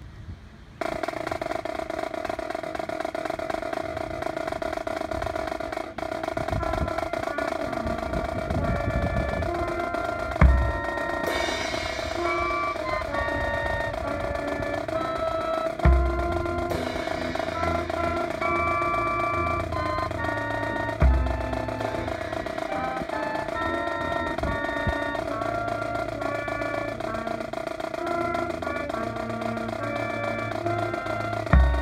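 A small brass band with sousaphones and a bass drum playing a slow piece, starting suddenly about a second in. Three heavy bass drum strikes stand out as the loudest sounds, a few seconds apart.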